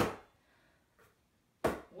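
A basketball slapped hard between bare hands, one sharp smack about one and a half seconds in with a short ring in the small room, after a near-quiet stretch with a faint tick.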